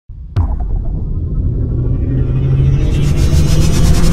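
Cinematic logo-intro sound effect: a sudden hit just after the start, then a deep rumble that slowly swells, with a bright shimmering rise joining about halfway through.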